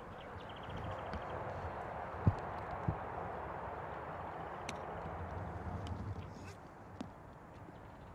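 Faint outdoor background noise with no clear single source, broken by two soft low thumps a little after two seconds and just before three seconds in, and a few faint clicks later on.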